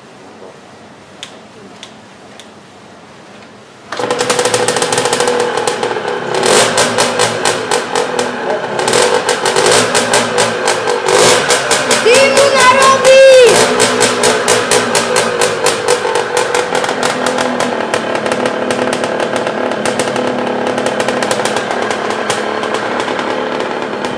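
Derbi Senda dirt bike kick-started: a couple of faint clicks of kicks, then about four seconds in the engine catches suddenly and keeps running loud. It is revved up and down, with the strongest blips near the middle, then settles to a steady fast run.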